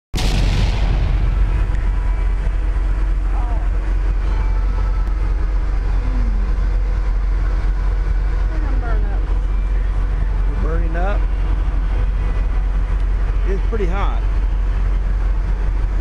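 Loud steady low rumble of an open cruise-ship deck, with a faint hum and faint voices talking under it. The sound starts abruptly right at the beginning.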